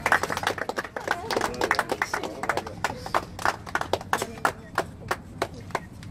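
A small group of people clapping in uneven, separate claps that thin out toward the end. Voices talk over the first couple of seconds.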